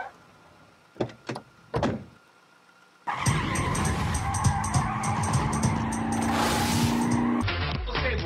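Three light knocks, then from about three seconds in a cartoon car sound effect: an engine running with tyres skidding, mixed with music, which cuts off suddenly near the end.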